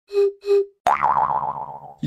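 Cartoon comedy sound effect: two short pitched blips, then a springy boing about a second in, its wobbling pitch falling as it fades.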